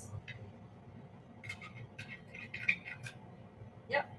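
Faint scraping and clicking of a serving spoon as cooked black rice is scooped onto a plate, a cluster of short scrapes in the middle, over a low steady hum.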